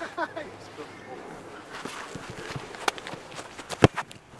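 Footsteps on grass during a run-up, ending just before the end in one sharp, loud thud of a boot kicking a rugby league football.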